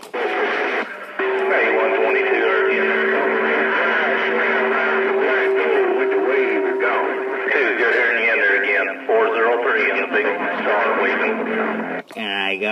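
Received audio from a Stryker SR-955HP CB radio: a narrow, tinny jumble of distant voices overlapping one another, with a steady whistle tone through the first half.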